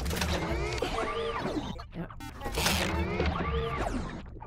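Cartoon sound effects of a flying machine's engine sputtering and failing: a deep rumble with clanks and rattles, and a whine that rises and falls twice, over background music.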